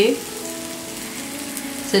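Green moong dal chilla sizzling steadily in oil on a pan.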